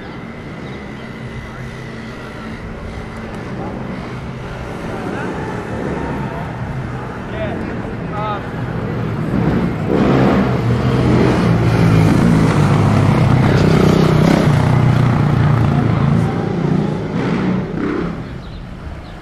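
Street sound with a motor vehicle's engine growing louder over about ten seconds, staying loud for several seconds as it passes close, then falling away near the end, with people's voices around it.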